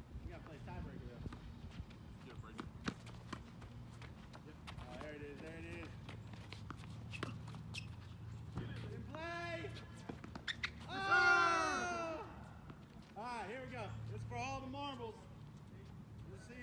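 Tennis balls being hit with rackets and bouncing on a hard court: a string of sharp, irregular pocks. Voices call out between the shots, the loudest a long shout about eleven seconds in.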